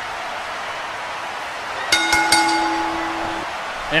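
A wrestling ring bell struck a few times in quick succession about two seconds in, its ringing tone fading over about a second and a half: the bell signalling the start of the match. Before it there is a steady hiss.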